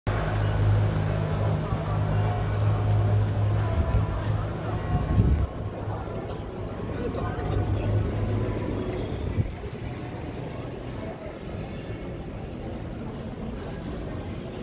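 City street sound: a steady low engine hum of traffic with people talking in the background, and a brief knock about five seconds in. The hum drops away at about nine and a half seconds, leaving a quieter indoor background.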